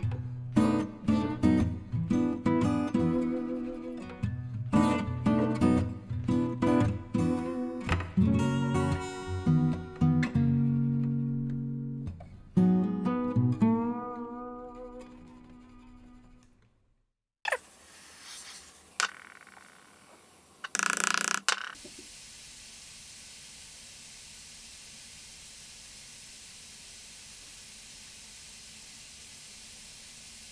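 Acoustic guitar music, plucked notes, fading out about halfway through. Then a few faint knocks and a short loud rushing burst, followed by a steady hiss.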